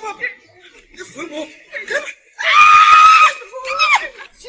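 A woman screams: one loud, high, held scream of just under a second, a little past the middle, between shorter distressed cries and exclamations.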